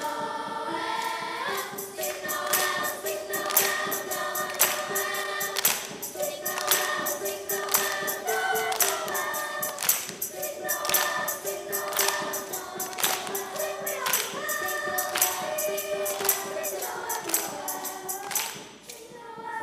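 A children's choir singing a song in held, sustained notes, with a percussion beat of short, crisp hits about once a second.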